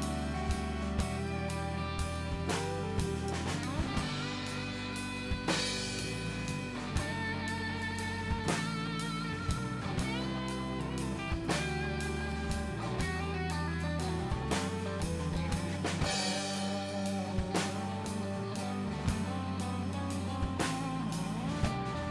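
A country band's instrumental break: an electric guitar solo on a Fender Telecaster-style guitar, with bent and wavering notes, over a steady drum beat and the rest of the band.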